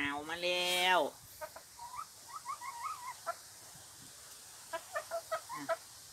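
Hens clucking softly: a run of short rising notes about two seconds in, then a few short clucks near the end.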